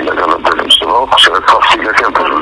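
A person talking, in a narrow-band recording with a radio-like sound.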